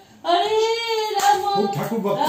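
A high-pitched voice singing a tune in long, wavering held notes, starting about a quarter second in, with a lower voice briefly joining near the end.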